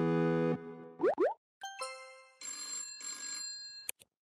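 Animated channel-intro jingle: a held synth chord ends, two quick rising sound-effect glides follow, then a chime and a shimmering, bell-like ringing effect, closed by a short click.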